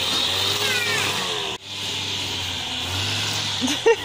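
Small petrol engine of a shoulder-slung grass trimmer running steadily while cutting grass, with a brief sudden drop about one and a half seconds in before the running resumes.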